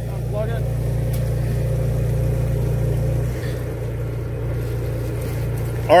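Half-horsepower Liberty pump running with a steady low motor drone while it pumps water through the drain pipe manifold.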